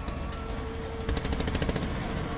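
Small wooden motorboat's diesel engine running with a rapid, even knocking that grows louder about a second in.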